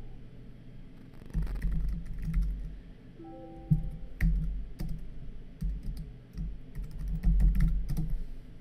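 Typing on a computer keyboard: irregular keystrokes with low thumps, starting about a second and a half in. A brief electronic chime of several tones at once sounds about three seconds in, as a desktop notification pops up.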